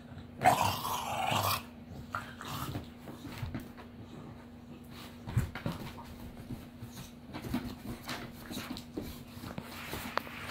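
Two dogs play-fighting: a loud growl lasting about a second near the start, then quieter growls, grunts and scattered clicks as they wrestle.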